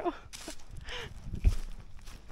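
Heavy breathing and footsteps of a hiker out of breath at the top of a steep climb, with a short voiced gasp about a second in and a low thump about one and a half seconds in.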